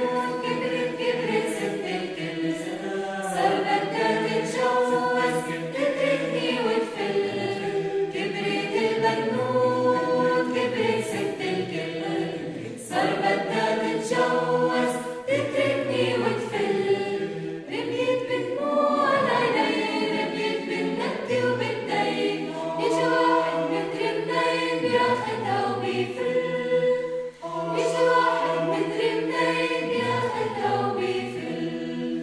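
Mixed choir of men's and women's voices singing a cappella in several parts, with two brief breaks in the sound, about 13 seconds in and near the end.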